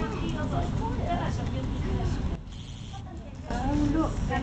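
People talking indistinctly nearby over a steady low rumble, with the voices dropping away for about a second midway.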